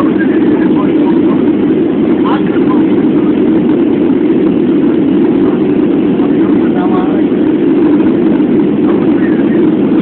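Steady engine and air noise of an airliner in flight, heard inside the cabin, a deep even rumble with no change in level, with faint voices over it now and then.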